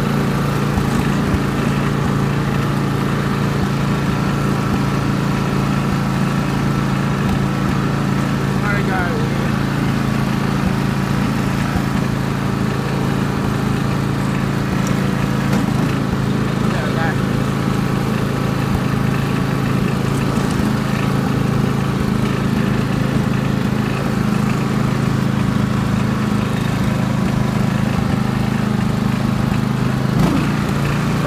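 Ride-on lawn mower engine running steadily at an even speed while the mower is driven across grass, with no revving or change in pitch.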